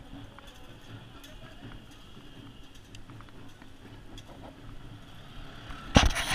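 Ride noise from a slow open vehicle on a street: a steady low rumble with scattered faint ticks and rattles, and a sudden loud burst of noise at the very end.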